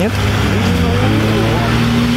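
A motor vehicle's engine running steadily with a low hum, its pitch rising slightly about halfway through.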